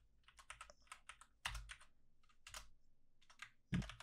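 Typing on a computer keyboard: irregular runs of quick, faint key clicks.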